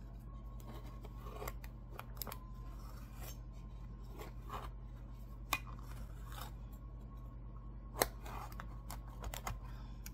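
Long curved knife cutting through a baked mandel bread loaf on an old metal cookie sheet: irregular slicing and scraping, with a few sharp clicks as the blade meets the pan, the loudest about eight seconds in.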